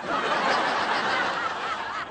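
A sitcom studio audience laughing together, steady for about two seconds and easing off near the end.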